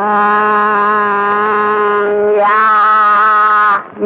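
A man singing two long, held notes with a slight waver, the second a little higher, opening a devotional song.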